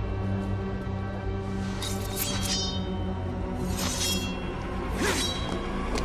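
Dramatic film score with a low sustained drone, cut by three sharp metallic hits that ring on briefly: a cluster about two seconds in, another about four seconds in, and one about five seconds in.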